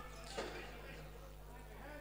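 Faint sound from an indoor futsal court at match play: a low steady hum under a quiet hall background, with one soft knock about half a second in.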